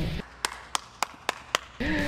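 Five sharp taps in an even rhythm, about four a second, in a short lull between music.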